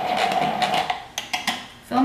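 Small handheld blender wand running in a glass jar of liquid with a steady whir, cutting off about a second in, followed by a few light clicks and knocks as it is lifted out and set down.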